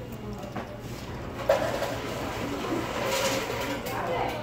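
A plastic spoon stirring and scraping in a paper cup of chili, with one sharp knock about a second and a half in, over faint background chatter.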